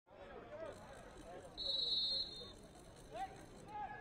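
A referee's whistle blown once, a steady shrill blast lasting just under a second about a second and a half in, over scattered shouts of players on the pitch.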